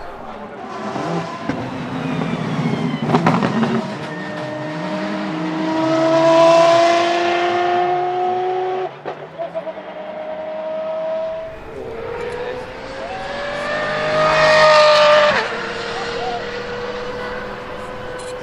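De Tomaso P72 supercar accelerating hard, its engine note climbing in pitch through the gears. The revs break at each upshift, about nine and eleven seconds in, and climb again to a loud peak around fifteen seconds before settling to a lower, steadier pitch.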